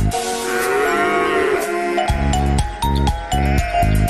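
Cheerful cartoon theme music with a beat, and a farm-animal call sound effect laid over it for about the first second and a half, while the beat drops out. The beat comes back about halfway through.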